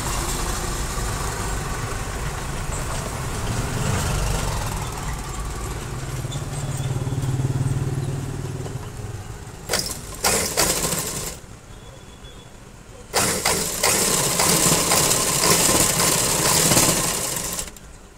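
Sewing machine stitching a seam in garment fabric: two short runs about ten seconds in, then a longer steady run of about four seconds that cuts off just before the end. Before the stitching, a steady low hum.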